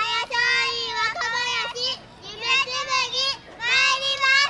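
High women's and children's voices of yosakoi dancers calling out a chanted call in three long, drawn-out phrases.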